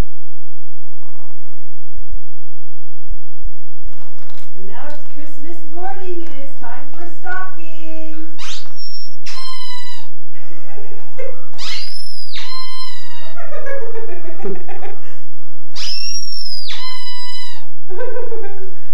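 Indistinct talk in a small room, with three high-pitched squeals that rise and fall in pitch in the second half.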